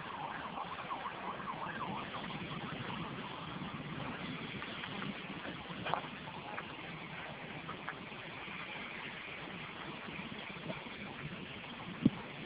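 A faint emergency-vehicle siren wailing over a steady rush of outdoor noise, with one sharp click about six seconds in.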